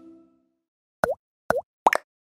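Music tail fading out at the very start, then three short cartoon pop sound effects about a second in, the last two closer together, each a quick bloop that dips and rises in pitch.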